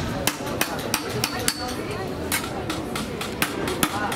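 Hand hammers striking copper sheet over steel stakes, sounding as sharp metallic taps at an uneven rate of about three to four a second. More than one hammer is at work, and the strikes overlap.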